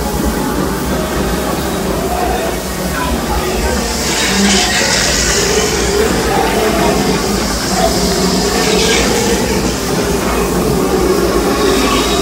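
Disneyland Railroad steam train rolling along the track with a steady rumble; a hiss swells about four seconds in and comes back briefly a few seconds later.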